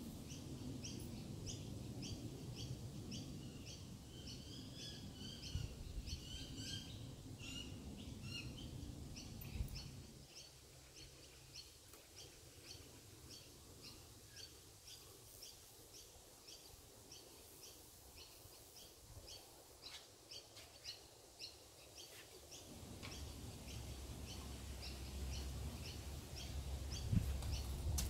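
Birds calling: a high, short chirp repeated about twice a second, with brief warbling notes a few seconds in. A faint low rumble sits underneath and drops away about ten seconds in.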